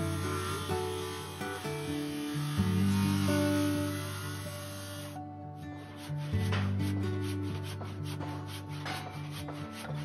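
Background music with held low notes that change every two to three seconds, over a steady rasping scrape of a tool working an oak timber. The rasping cuts off about five seconds in, and after that only a few separate scraping strokes are heard under the music.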